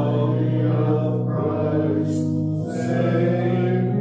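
A slow hymn sung over held accompaniment chords, the chords changing about every second and a half.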